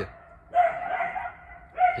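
A drawn-out animal call held at one steady pitch for nearly a second, with another beginning near the end.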